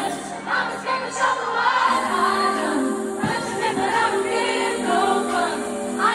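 A female pop singer sings a slow ballad live into a microphone, amplified through an arena sound system and recorded from the audience. Sustained backing chords come in about two seconds in.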